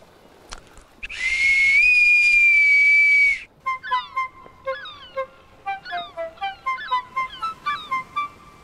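A boatswain's pipe (bosun's call) blown in one long, shrill note lasting about two seconds, stepping up a little in pitch soon after it starts, then held until it cuts off. A light flute-like tune of short notes follows.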